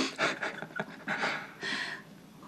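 Breathy laughing and short breaths, a handful of quick puffs over two seconds, as food is taken in the mouth.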